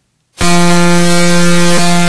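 A loud, steady, horn-like electronic tone held on one pitch with a hiss over it, starting suddenly about half a second in. It is an edited-in sound effect for a transition.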